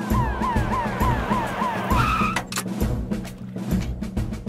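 Cartoon fire-rescue vehicle's siren sounding in quick rising-and-falling cycles, two to three a second, then a brief tyre screech about two seconds in as it stops, over background music.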